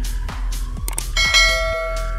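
Electronic background music with a steady beat. About a second in, a bright bell chime rings, as from a subscribe-button notification animation, and fades over the next second and a half.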